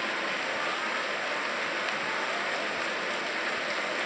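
A crowd of people clapping their hands together, a steady, even clatter of many hands.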